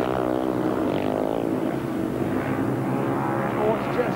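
Speedway bikes' single-cylinder methanol engines running flat out with open exhausts, their pitch wavering slightly as the riders race through the bends.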